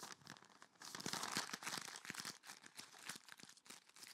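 Sheets of recycled paper being crumpled into balls by hand, one in each hand at once: a faint, rapid crackling and rustling.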